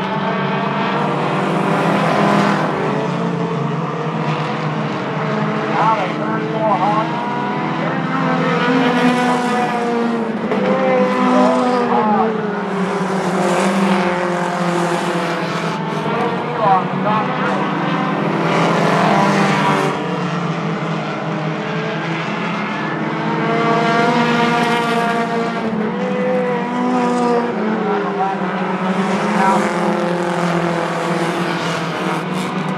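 Several four-cylinder short-track race cars running laps on an asphalt oval. The pitch of their engines rises and falls in repeated waves as the cars accelerate and pass through the turns.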